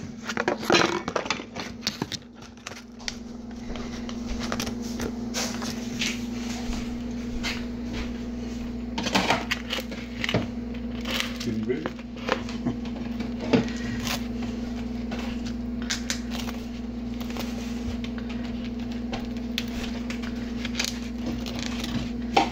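Scattered clicks and knocks of things being handled, over a steady low hum, with faint voices in the background.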